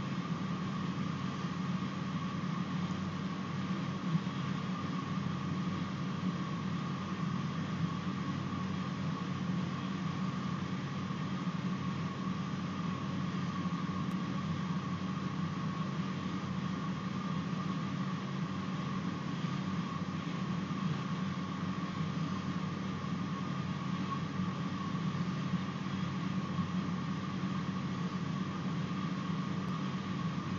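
Steady background hum and hiss, a low hum with a fainter, higher steady tone above it, unchanging throughout with no distinct events.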